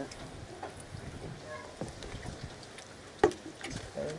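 Quiet outdoor background with faint voices and a single sharp knock about three seconds in.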